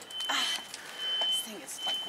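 A woman laughing in breathy bursts, with short bits of talk, and a thin high-pitched steady tone that cuts in and out.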